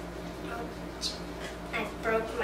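Quiet room tone with a steady low hum, a short hiss about a second in, and a girl's voice starting near the end.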